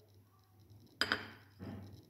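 A tablespoon clinking once against a dish about a second in, with a brief ring, then a softer knock about half a second later.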